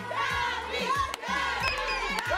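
A studio crowd shouting and cheering all at once, many voices over each other.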